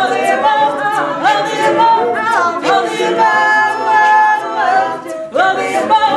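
Mixed-voice a cappella group singing held chords under a female lead voice, with beatboxed vocal percussion clicking out a regular beat.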